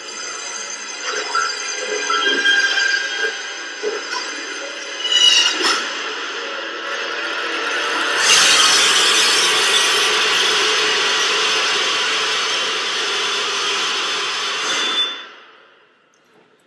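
Soundtrack of an animated short film: music with sound effects. From about eight seconds in, a louder, steady noise takes over and stops suddenly near the end.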